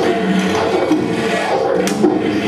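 Live band playing loud, dense music with electric guitar, with a sharp hit near the end.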